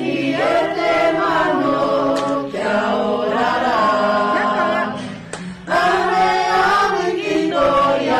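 A group of voices singing an action song together in harmony, in sung phrases with a brief pause about five seconds in.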